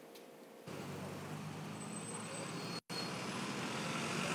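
Steady road-traffic noise from a busy city street, picked up by a live reporter's microphone. It comes in abruptly a little under a second in, after a very quiet moment, and drops out completely for an instant about three seconds in.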